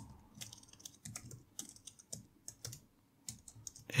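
Computer keyboard typing: a quick, irregular run of quiet keystrokes as code is typed and a typo corrected.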